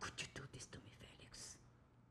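A person's faint whispered voice: a few quick clicks and short hisses, with a longer hiss a little past halfway.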